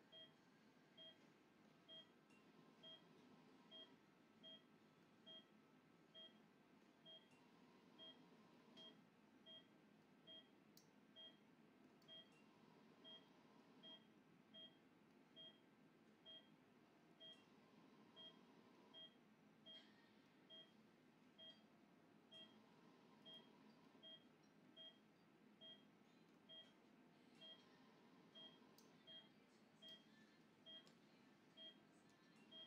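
Anaesthesia patient monitor beeping in time with the anaesthetised dog's heartbeat: short beeps at one steady pitch, about one and a half a second, over a faint operating-room hum.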